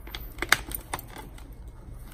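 Hands pressing a motorcycle helmet's liner and intercom wiring into place, giving a quick run of sharp plastic clicks about half a second in, the loudest at the end of that run, then a few lighter clicks and rustles around a second in.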